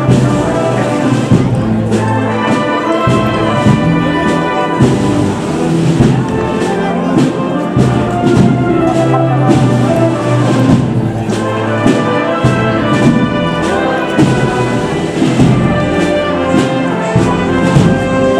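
Brass band playing a processional march, with sustained brass notes and chords.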